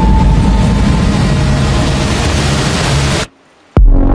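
Loud, dense rumbling noise from the film's sound design, with low steady tones beneath it. It cuts out suddenly about three seconds in and comes back half a second later with a sharp hit.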